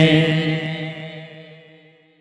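A long held vocal note ending a naat, an Urdu devotional song, drawn out with reverb and fading steadily until it dies away near the end.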